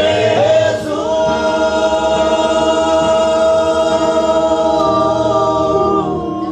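Male vocal ensemble singing a gospel song in close harmony into microphones, holding one long chord for several seconds.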